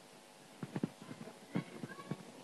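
A few soft, irregular knocks and bumps of footsteps and handling as a microphone is picked up off a digital piano. There is a cluster about half a second in and another around a second and a half in.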